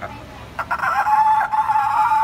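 Sea lion giving one long, loud call starting about half a second in and held steady for about a second and a half.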